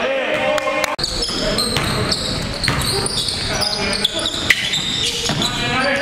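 Basketball game in a hall-like gym: voices calling out over a ball bouncing on the hardwood floor, with a brief dropout about a second in.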